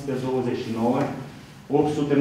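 A man's voice reading out figures in a small room, with a brief pause shortly before the end.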